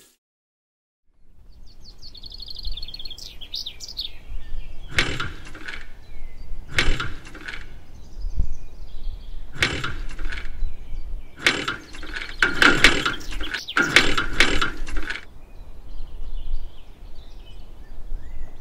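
Outdoor ambience that starts about a second in, with birds calling: a short descending run of high chirps, then repeated harsh, rasping calls, mostly in pairs, that stop near the end.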